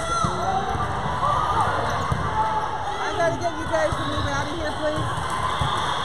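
Many voices of players and spectators echoing in a large gym, with a volleyball thumping on the hardwood floor several times.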